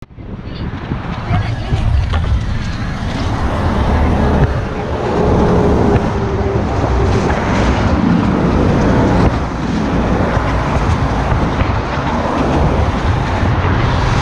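Wind rushing over the microphone of a car moving at highway speed, with road and tyre noise underneath. It fades in quickly just after the start.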